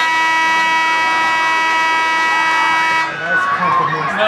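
A single steady horn blast lasting about three seconds that starts and cuts off sharply, with crowd voices underneath.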